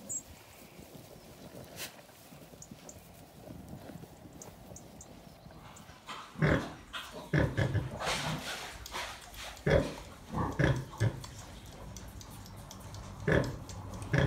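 Gloucester Old Spot sow grunting in short repeated bursts while her newborn piglets suckle, starting about six seconds in after faint field noise.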